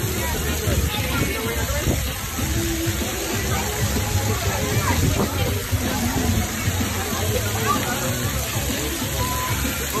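Water pouring and splashing steadily from splash-pad fountains onto the wet pavement, with a babble of voices and music playing in the background.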